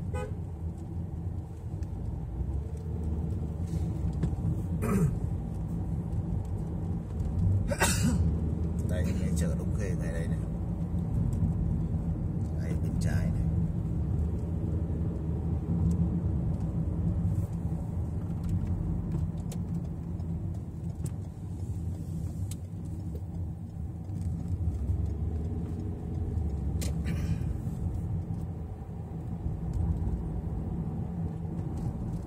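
Car interior noise while driving: a steady low rumble of engine and tyres. A few short, sharp higher sounds come through about 5, 8, 10, 13 and 27 seconds in.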